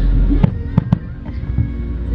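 Japanese Nagaoka fireworks' aerial shells bursting: three sharp bangs in quick succession about half a second to a second in, over a continuous low rumble of other bursts.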